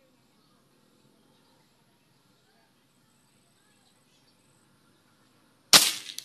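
A single shot from a CO2 air rifle converted to PCP (pre-charged pneumatic): one sudden sharp report near the end, after several seconds of faint background.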